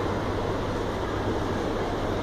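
Schindler escalator running: a steady low hum under an even rushing noise.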